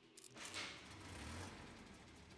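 Car ignition key turned with a small click, then the engine starts about half a second in and settles into a steady low running hum.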